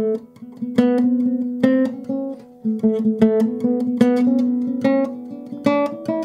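Classical guitar playing a slow tremolando scale: each scale note is plucked several times in quick succession before stepping to the next. A louder accented stroke recurs about once a second, with the other strokes kept quiet.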